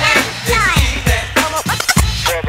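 Hip hop beat played from vinyl, with a DJ scratching a record on a turntable: pitch sweeps run down and up over the drum hits.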